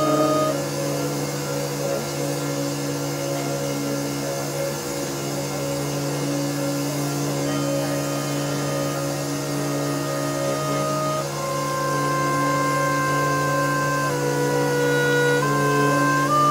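Live experimental music: a slow drone of several long held tones over a steady low note. Higher tones come in about two-thirds of the way through and step to new pitches twice near the end.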